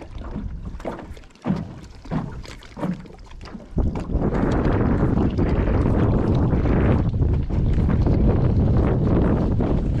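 Wind buffeting the microphone: a loud, steady rumble that sets in about four seconds in, after a few light knocks in the quieter opening seconds.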